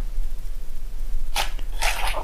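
Handling noise of rubber gloves and a zippered fabric pouch being rustled by hand. The first half is fairly quiet, with a short rustle a little past halfway and more rustling near the end.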